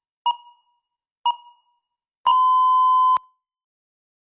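Electronic countdown timer beeping: two short beeps a second apart, then one long steady beep of nearly a second that cuts off sharply, signalling that the speaking time has run out.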